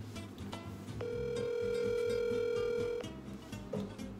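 Telephone ringback tone from a phone on speaker: one steady two-second ring while the call waits to be answered. Background music plays underneath.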